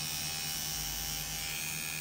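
Pen-style rotary tattoo machine running with a steady buzz as it works on the skin.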